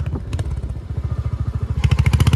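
Motorcycle engine running at idle with a steady, even low beat, getting louder near the end.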